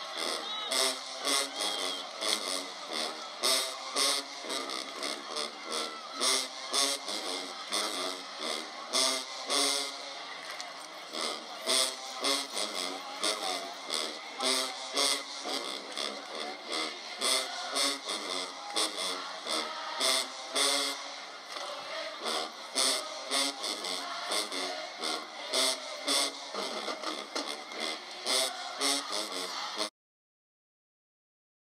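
Marching band playing: brass over a quick, regular beat of drum and cymbal hits.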